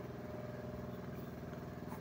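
A steady low motor hum in the background, even and unchanging.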